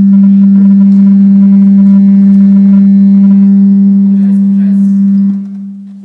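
Loud, steady low-pitched hum from the hall's PA system, like microphone feedback. It holds one note and fades away about five seconds in.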